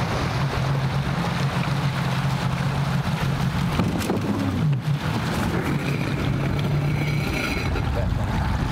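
Personal watercraft engine running at low speed over splashing water as the craft comes in and rides up onto a floating drive-on dock. The engine note dips briefly about halfway through, then holds steady and falls away near the end.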